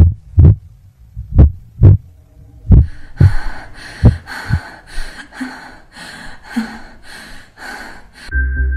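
Heartbeat sound effect: paired low thumps, lub-dub, repeating about every second and a half. About three seconds in, a rhythmic hissing pulse about three times a second joins it.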